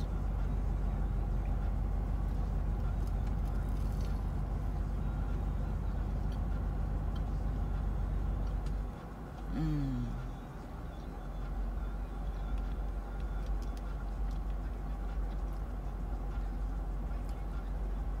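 Car idling, a steady low hum heard inside the cabin. About halfway through comes one short, falling 'mm' from a person chewing food.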